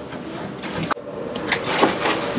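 Handling noise of gear being moved in and around a caravan front locker: a sharp click about halfway through, then a rustling swish near the end as a bagged fabric towing cover is lifted.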